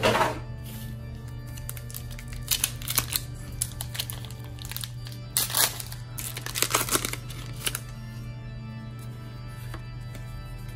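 Foil Pokémon Shining Legends booster pack crinkling and tearing open in several short bursts between about two and eight seconds in, over steady background music.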